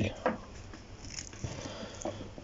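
Quiet rustling and a few light clicks from a frayed old welding cable being handled on a wooden board.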